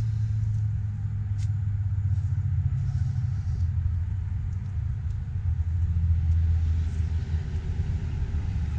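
Steady low rumble of a vehicle engine idling, with no change in pitch.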